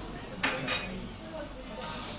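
Dishes clinking twice in quick succession about half a second in, the first sharp and the loudest sound, over a steady murmur of coffee-shop chatter.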